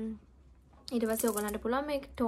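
A woman's voice: a drawn-out vowel trails off, there is a short pause, and she starts speaking again about a second in with a brief hiss.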